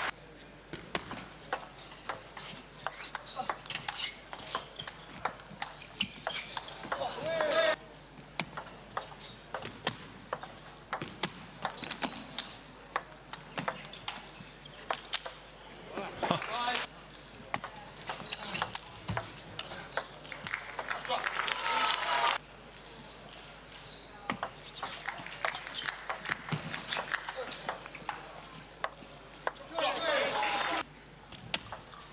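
Table tennis ball clicking off the table and the rubber of the rackets in fast rallies, several clicks a second, with crowd shouts and cheering swelling after points. The sound cuts off abruptly three times as the highlights jump from one point to the next.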